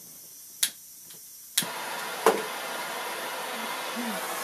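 A couple of sharp clicks, then a handheld propane blowtorch lights about a second and a half in and hisses steadily, with one more knock just after it lights.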